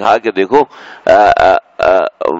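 A man speaking in a lecture, with one drawn-out vowel a little past the middle.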